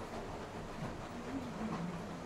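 Chopped onion, garlic and ginger sizzling steadily in hot oil in an aluminium kadai as a spatula stirs and scrapes through them.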